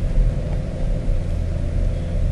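A steady low rumble with a faint hum.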